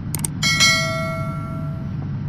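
A short click followed by a bright bell chime that rings out and fades over about a second and a half: the notification-bell sound effect of a subscribe-button overlay. A low steady hum sits underneath.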